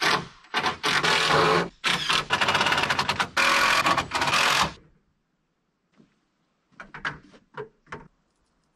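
Rapid, loud mechanical clattering for nearly five seconds from work on the metal rain gutter, then a few light clicks and taps near the end.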